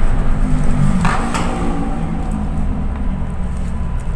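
Inside a moving bus: steady low engine and road rumble with a droning engine note, and a brief clatter about a second in.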